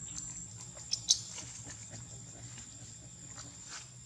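Steady high-pitched insect drone, with a cluster of short sharp clicks about a second in, one much louder than the rest, and fainter scattered ticks after it.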